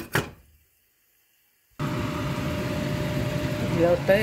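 A stainless steel pot lid clinks a couple of times under a hand. Then the sound cuts to dead silence for about a second. After that a steady low rumbling hum of kitchen machinery runs on.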